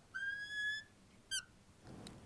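Marker squeaking on a glass lightboard while drawing an arrow: one high-pitched squeak of about two-thirds of a second, then a short chirp about a second later.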